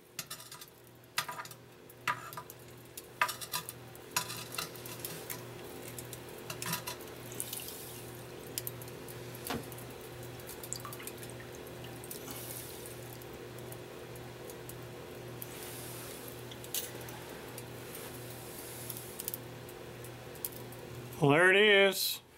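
Steel tongs clink against a cast-iron pot and its lid a few times, then a steady hiss of quench oil follows as a just-quenched tool-steel tappet is worked in the pot and lifted out.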